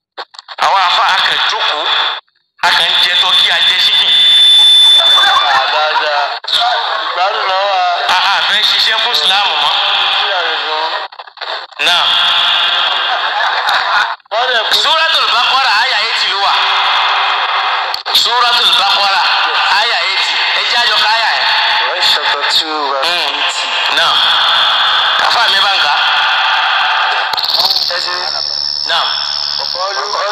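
A person's voice speaking loudly and continuously, with short pauses. It sounds thin, with little bass.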